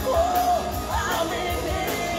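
Live alternative rock band playing: electric guitar, bass guitar and drums with cymbal hits, under a male lead vocal that holds a long sung note early on.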